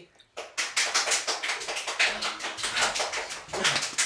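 A few people clapping their hands, quick irregular claps starting about half a second in, with a short voice sound near the end.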